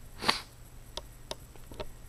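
A short sniff from a Rhodesian Ridgeback puppy about a quarter second in, followed by a few faint clicks.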